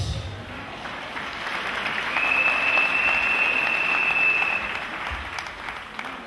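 Congregation applauding in a hall, swelling in the middle and fading away. A steady high-pitched tone sounds over the clapping for about two and a half seconds in the middle.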